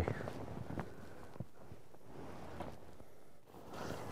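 Faint rustle and light clicks from a skier's body-worn microphone as he sets off down the slope, with a short dropout near the end.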